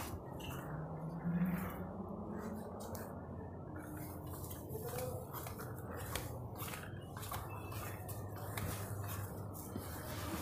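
Irregular light clicks and scuffs of footsteps on a concrete staircase, mixed with the rubbing of a hand-held phone's microphone, over a low steady hum. A brief low rising tone about a second in is the loudest moment.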